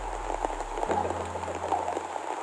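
Rain pattering as many small irregular drops, over low steady tones that change pitch about a second in.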